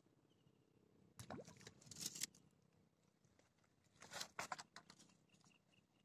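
Mostly near silence, with a few brief faint rustles and clicks about a second in and again around four seconds in: gloved hands handling fishing tackle.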